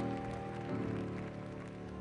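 Background music: sustained, unwavering keyboard chords in the style of a church organ, moving to a new chord about three quarters of a second in.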